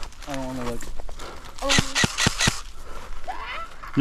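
Airsoft gun shots: a quick string of about five sharp pops near the middle, with a person's call near the start.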